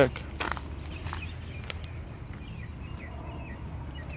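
Footsteps on pavement over a steady low rumble, with faint, short bird chirps.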